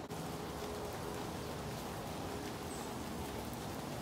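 Steady rain falling, heard as an even hiss.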